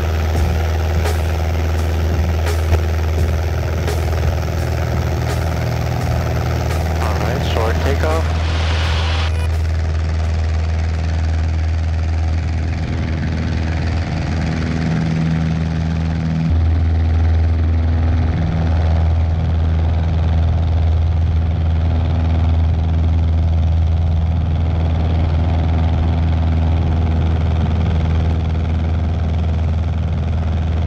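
A Cessna 150's Continental O-200 four-cylinder engine and propeller running at takeoff power, a steady drone through the takeoff roll and climb-out, a little louder from about halfway through.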